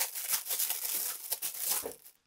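Clear plastic bag crinkling and rustling in the hands as nylon straps are pulled out of it: a rapid, irregular crackle.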